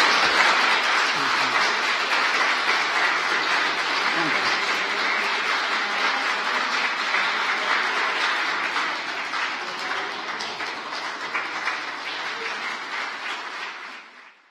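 A roomful of people applauding, a dense steady clapping that slowly dies away.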